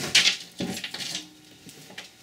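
Metal necklace chains and pendants clinking against each other on a wooden tabletop as a pile of jewelry is handled. A short, bright jangle comes right at the start, followed by a few softer clinks, then it goes quiet.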